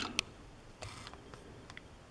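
A camera being refocused: a sharp click just after the start, then a few faint ticks and light handling noise.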